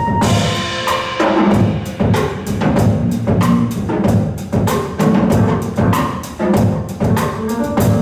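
Small jazz ensemble playing live: piano over drum kit and bass, with drum strikes keeping a steady beat.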